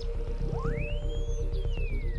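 Shortwave radio receiver being tuned: a whistle glides steeply up, then slowly down. Behind it is a background music track with a steady held note and a low pulse.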